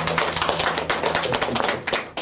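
Small audience clapping after a song, with many irregular claps, as the last low note of an acoustic guitar fades underneath.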